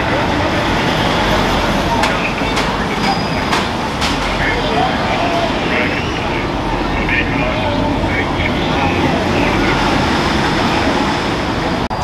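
Busy street ambience: the mixed chatter of a walking crowd over steady traffic noise, with a few sharp clicks or taps about two to four seconds in.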